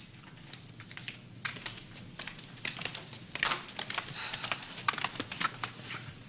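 Footsteps on a hard floor: a run of light, irregular clicks that grow louder and closer together in the second half.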